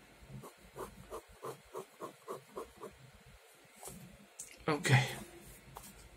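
Ballpoint pen drawing on paper: a quick run of short scratching strokes, about three or four a second. About five seconds in comes a brief, louder sound.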